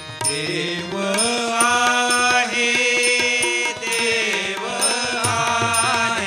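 Marathi abhang bhajan: voices singing a devotional melody over harmonium, with tabla and taal (small hand cymbals) striking a steady beat.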